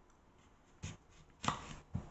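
Kitchen knife cutting through a ripe crystal apple cucumber on a wooden chopping board: a few short cutting sounds, starting about a second in, the loudest about a second and a half in.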